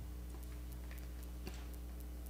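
Faint rustles and light clicks of paper sheets being leafed through close to a lectern microphone, over a steady low hum.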